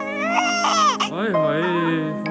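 Newborn baby crying: two high-pitched cries of about a second each.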